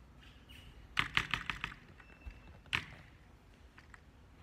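Keystrokes on a computer keyboard: a quick run of about six keys, then a single louder keystroke.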